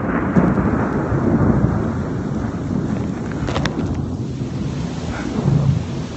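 Thunder rumbling low and continuous just after a lightning strike very close by, with heavy rain, heard through a phone's microphone. A brief sharp click about three and a half seconds in.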